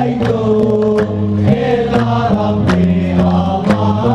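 Hamadcha Sufi brotherhood chanting as a group of male voices, with sharp hand-percussion strokes about twice a second.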